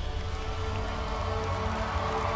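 Instrumental music with a deep, sustained bass and several held tones, growing slightly louder.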